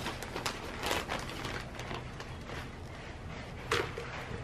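Hands scooping potting soil out of a plastic potting-mix bag: soft, irregular rustling and scraping, with a sharper scrape near the end.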